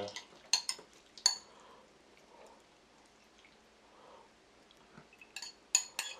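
A metal spoon clinking against dishes as bulgogi is spooned from a pot into a bowl: a few clinks in the first second or so, a quiet stretch, then several more near the end.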